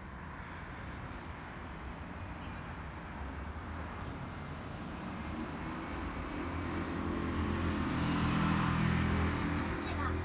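Road traffic at a city intersection: a steady hum of cars, building as a vehicle with a low engine note draws near, loudest about eight seconds in, then starting to fade.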